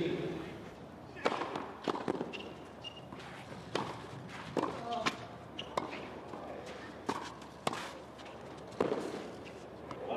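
Tennis ball in a baseline rally on a clay court: sharp racket strikes and ball bounces, about a dozen irregularly spaced roughly a second apart.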